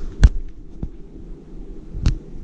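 A single sharp thump about a quarter second in, then a much fainter click, over a steady low rumble.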